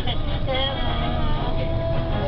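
Steady low rumble of a bus's engine and road noise, with film dialogue from the onboard TV speaker playing over it.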